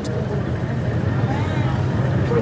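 Steady low hum of an idling vehicle engine under outdoor background noise, with faint voices in the background.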